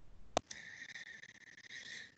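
A single sharp click about half a second in, then a faint steady high-pitched hiss coming through the video-call audio.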